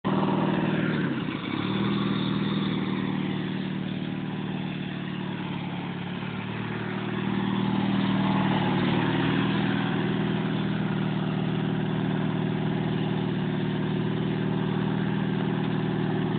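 Riding lawn mower's small engine running steadily under way, with a brief dip in pitch about a second in.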